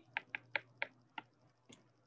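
Stylus tip tapping on a tablet's glass screen while handwriting, about six sharp light ticks in the first second and a half.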